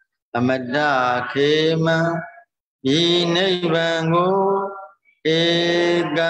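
A Buddhist monk's male voice chanting scripture in a slow, sing-song recitation: three long phrases, each held on a few steady pitches, with short pauses between them.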